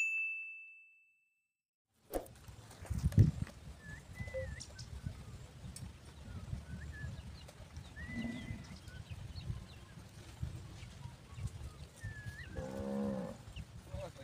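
A bell-like ding rings out at the start and fades. Then comes outdoor wind rumble on the microphone with a few short bird chirps, and a cow moos once, briefly, near the end.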